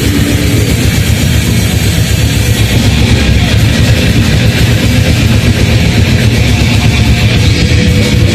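A live heavy metal band playing at full volume: distorted electric guitars and bass over dense, rapid drumming, with no break.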